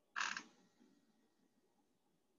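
A single short rasp lasting about a quarter of a second, shortly after the start, trailing off into a faint softer rustle.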